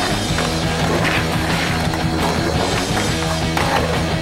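Rock music soundtrack over skateboard sounds: trucks grinding along a concrete ledge and urethane wheels rolling on concrete.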